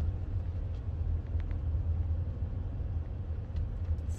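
Steady low rumble of a car heard from inside its cabin, with a couple of faint ticks about a second in.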